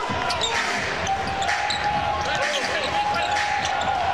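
Basketball being dribbled on a hardwood court, with repeated sharp bounces over arena crowd noise. A steady high tone is held from about a second in until near the end.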